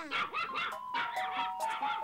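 Cartoon background music with a melody stepping downward, over a small dog's quick, repeated barks and yips.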